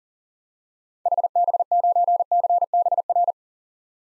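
Morse code sent at 40 words per minute: a single steady tone keyed on and off in rapid dits and dahs, spelling the call sign HB9CBR. It starts about a second in and lasts a little over two seconds.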